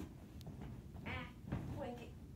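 Two short wordless voice sounds from a person, one about a second in and a shorter one near the end.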